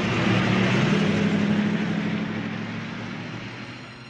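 A van driving past: engine hum and road noise, the engine note rising a little in the first second, then fading away as the van moves off.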